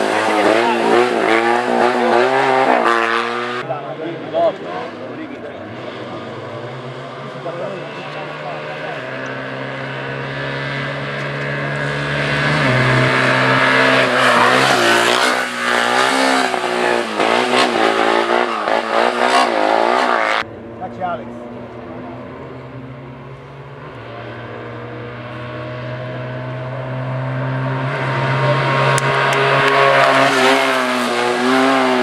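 Small Fiat 500-type race cars accelerating hard through a cone slalom one after another, engines revving up and falling back as the drivers shift and lift between the cones. The sound cuts abruptly from one car to the next a few seconds in and again about two-thirds of the way through.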